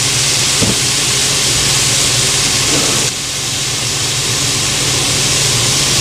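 Soy sauce sizzling in a hot frying pan of sautéed green beans and ground pork, a steady loud hiss that eases a little about three seconds in.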